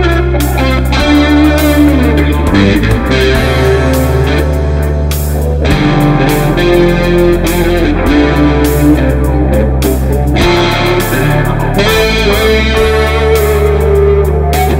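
Fender Stratocaster electric guitar playing an improvised blues-rock lead, with bent and vibrato-shaped notes, over a backing track of held bass notes and drums.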